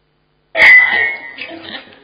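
Handheld microphone coming on: a sudden loud pop about half a second in, a brief high ring, then handling noise fading down.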